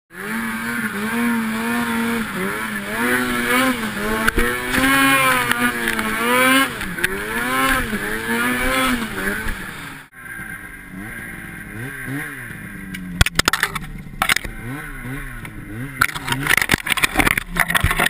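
Two-stroke Ski-Doo snowmobile engine revving up and down again and again. About ten seconds in the sound cuts to a quieter ride recording, where the engine pitch keeps rising and falling under several sharp knocks.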